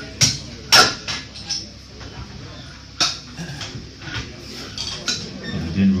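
Metal barbell plates clanking as the weight on a squat bar is changed: two sharp clanks just after the start and another about three seconds in.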